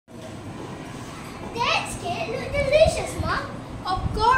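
Children's high-pitched voices in a classroom, beginning about a second and a half in over a steady background hum of room noise.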